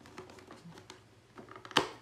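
Thin cardboard box being pried open by hand: faint scrapes and small clicks as the tuck flap is worked loose, then one sharp snap near the end as the lid comes free.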